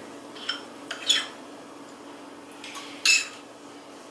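A metal teaspoon clinks and scrapes against a ceramic bowl as turkey filling is scooped out, with a few short clinks about half a second in, about a second in and a louder one about three seconds in. A faint steady hum lies underneath.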